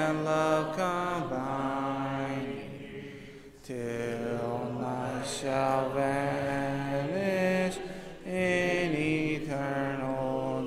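A congregation sings a hymn a cappella in several-part harmony, holding long notes. The singing breaks briefly between phrases a little past three seconds in and again near eight seconds.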